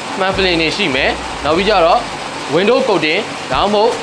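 Only speech: a man talking, with no other sound standing out.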